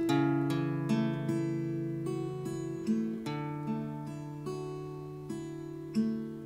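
Steel-string acoustic guitar with a capo, fingerpicked slowly and gently: single plucked notes over held bass notes, each ringing and fading, a new note about every half second.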